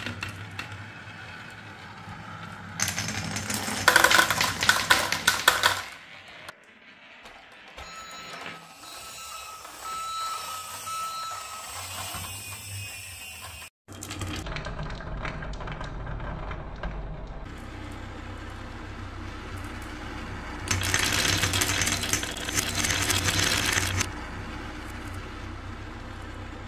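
Glass marbles rolling and clattering down a wooden spiral marble-run track, with two dense stretches of rapid rattling clicks and a softer steady rolling in between. The sound cuts out for an instant about halfway through.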